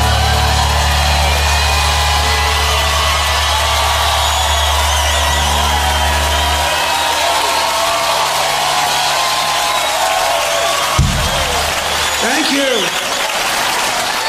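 A live rock band's final held chord sustains and cuts off about halfway through, while the audience cheers and applauds. There is a single thump about three seconds before the end, then whoops from the crowd.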